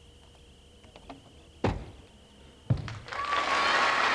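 Two heavy thumps about a second apart from a gymnast's balance-beam dismount, the second being the landing on the mat. The audience then breaks into loud applause.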